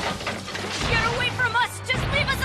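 Cartoon soundtrack: background music over the settling crash of a wooden building, then short, high, warbling cries from about a second in.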